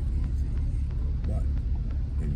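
2000 GMC Sierra pickup creeping slowly along a sandy dirt road, heard from inside the cab: a steady low rumble of engine and tyres.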